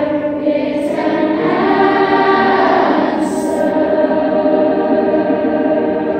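Youth choir singing long, held notes, with a brief hiss of a sung consonant about three seconds in.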